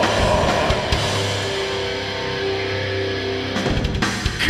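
Live heavy metal/hardcore band with distorted guitars, bass and drums playing loudly. About a second in, the band drops to a held, ringing chord, and the full band crashes back in with drums just before the end.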